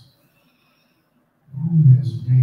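A man's deep voice through the pulpit microphone, loud, in long held sounds rather than clear words. It comes in about one and a half seconds in, after a pause.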